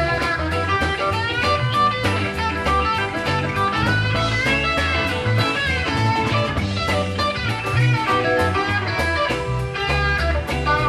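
A live rock band playing an instrumental break in a country shuffle: electric lead guitar runs over bass and a steady drum beat.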